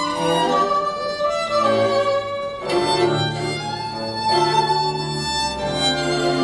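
Live string quartet of two violins, viola and cello, bowed together in held chords, with a sharp new attack about three seconds in.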